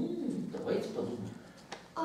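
Indistinct low voice sounds without clear words, wavering for about a second and a half, then a single sharp click shortly before the end.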